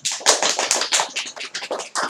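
Hands clapping: a quick, uneven run of sharp claps.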